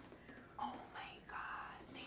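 A woman's faint whisper under her breath, in a few short breathy stretches.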